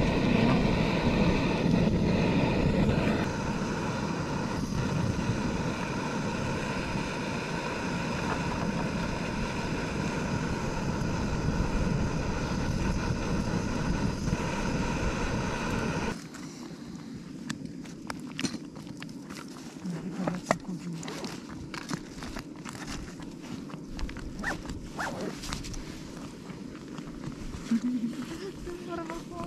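Canister gas stove burning under a steel pot with a steady roar. About sixteen seconds in the roar drops away abruptly, leaving quieter scattered clicks and scrapes of a spoon stirring polenta in the pot.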